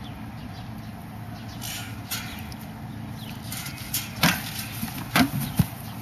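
Steady outdoor background noise with some rustling, then a few sharp knocks in the second half, from people moving about and the handheld camera being handled.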